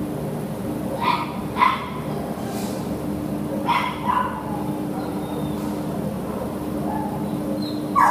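Dog barking in short pairs, two quick barks about a second in and two more about four seconds in, over a steady low hum.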